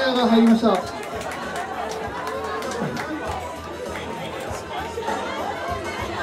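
Many people chattering at once in a small live-music club, a busy crowd murmur after the set. A man's voice over the PA is loud for a moment at the very start, then falls back into the crowd noise.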